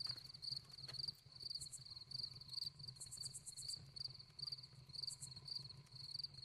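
Crickets chirping faintly and steadily, about three chirps a second, over a faint low hum.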